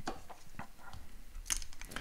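Plastic Lego bricks being picked up and handled, giving a few light scattered clicks and knocks, the sharpest about one and a half seconds in and near the end.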